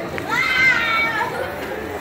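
A single high-pitched voice calling out, drawn out for about a second, over the chatter of people around.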